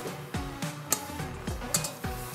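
Background music: a light, rhythmic run of short plucked or drum-like notes, each dropping quickly in pitch, a little over two a second.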